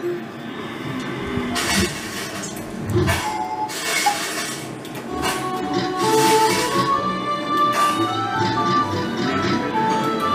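Slot machine game music and clinking sound effects as the reels spin through a free-spins round, with short beeping notes that come thick and fast in the second half.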